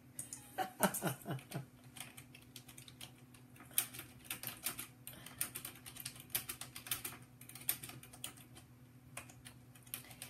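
A woman laughs briefly at the start. Then comes a faint, irregular clicking of typing on a computer keyboard.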